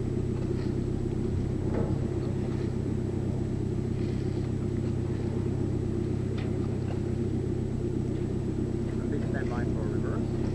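The submarine's engine running steadily at slow speed during a quayside approach: a constant low drone.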